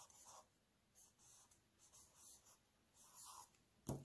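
Faint scratching strokes of a felt-tip marker writing digits on notebook paper, a few short strokes spread through.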